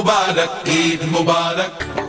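Music: a chant-like sung vocal holding long, gliding notes.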